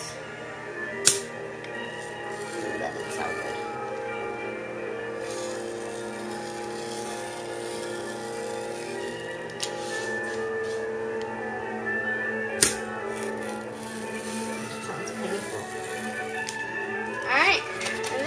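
Background music from a television playing a Christmas movie: soft sustained tones that run steadily. Two sharp clicks cut through, about a second in and again about two-thirds of the way through.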